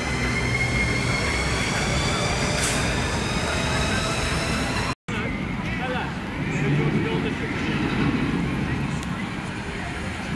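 Steel roller coaster train running on its track overhead, its wheels giving a whine of several steady tones that rise slowly in pitch over a rumble; it cuts off suddenly about halfway through. After that, open-air background noise with distant voices.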